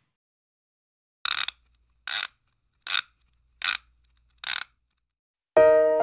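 Five short swishing noise bursts, evenly spaced about 0.8 s apart, then piano music starting near the end.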